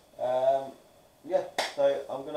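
A man's voice in short stretches, with a single sharp snap from his hands about one and a half seconds in.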